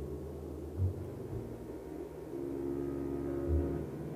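Low ambient drone from an experimental film's sound score: steady deep held tones, joined by a pair of higher sustained tones about two seconds in. Two brief deep pulses sound, about a second in and near the end.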